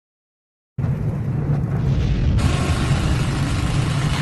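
Cinematic logo-reveal sound effect: a deep rumble that starts suddenly under a second in and turns brighter and hissier about halfway through.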